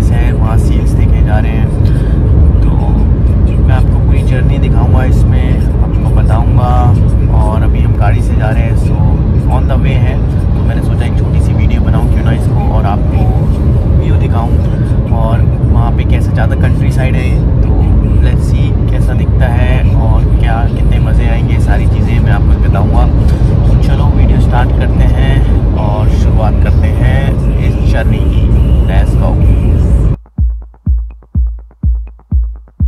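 A man talking inside a moving car, over a steady low rumble of road and engine noise in the cabin.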